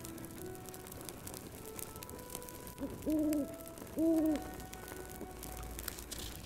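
An owl hoots twice, two short low hoots about a second apart near the middle, over soft background music and a crackling fire.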